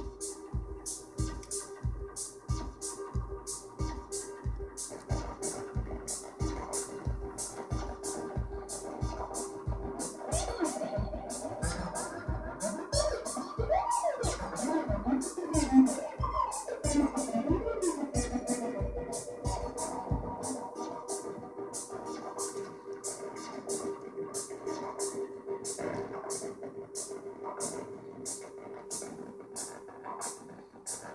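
Eurorack modular synthesizer patch, sequenced by an SQ-8 sequencer clocked from MATHS, playing a steady pattern: low kick-like pulses about two a second with faster high clicks over a held drone tone. In the middle, pitched glides sweep up and down, and the low pulses drop out about twenty seconds in while the clicks and drone carry on.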